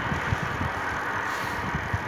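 Steady rush of wind on a hand-held phone microphone while riding, with irregular low buffeting and street noise underneath.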